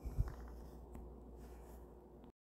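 Faint phone-handling noise picked up by the phone's own microphone: a couple of soft low bumps near the start, then a low hum and faint rustle, with a light tap about a second in.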